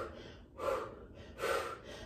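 A woman breathing hard from exertion while holding a glute bridge: two short, audible breaths about a second apart.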